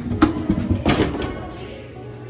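Drink vending machine dispensing: its coil turns and a plastic bottle knocks as it tips forward and catches against the glass instead of dropping. There are a few sharp knocks in the first second, over background music.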